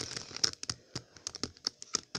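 Plastic 3x3 Rubik's cube clicking and clacking under the fingers, a quick irregular run of sharp clicks from its pieces as it is worked by hand. One piece has popped out of the cube, the sign of a loose cube.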